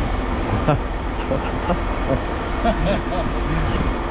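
Steady low rumble of machinery running in a scrapyard, with faint voices over it.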